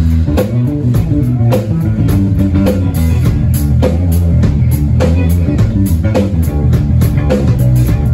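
A live rock band playing: electric guitars and a drum kit, loud, with heavy bass notes and a steady beat.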